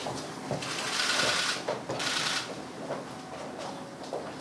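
Two bursts of rapid mechanical clicking, the first about a second long and the second shorter, typical of press cameras' shutters firing, over faint murmuring and shuffling in the room.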